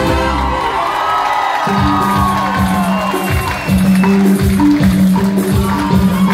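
Live band music from a Latin dance band with saxophones, electric guitar, bass and percussion. About two seconds in, the band drops into a steady dance rhythm with regular bass pulses and percussion strokes.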